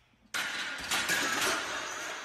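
A loaded steel squat rack toppling over: a sudden crash about a third of a second in, then a continuing clatter of metal frame and plates.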